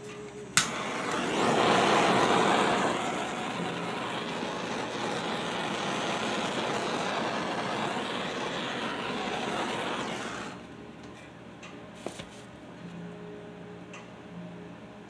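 A handheld gas torch clicks alight and runs with a steady hiss for about ten seconds over wet acrylic paint. It is loudest in the first couple of seconds, then cuts off.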